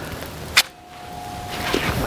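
FN 510 10mm pistol being handled to clear a malfunction: one sharp metallic clack of the slide being worked about half a second in. After it come a faint steady tone and soft rustle of gloved hands as the gun is brought back up.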